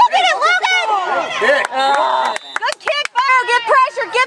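Spectators shouting and yelling, with several voices overlapping, and a few sharp clicks about two and a half seconds in.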